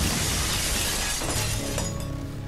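Glass panes of a greenhouse roof shattering as a cartoon sound effect: a sudden crash followed by a spray of falling shards that trails off over about two seconds.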